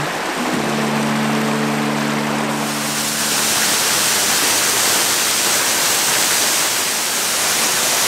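Water rushing over rocks and a waterfall falling close by: a steady hiss that grows louder and brighter about three seconds in and then holds. Sustained music chords sound underneath for the first three seconds or so and fade out.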